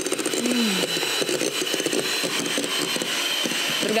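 Electric hand mixer running at a steady speed, its beaters whisking a batter of sugar, flour and margarine in a glass bowl, with a high, even motor whine over the whirr of the beaters.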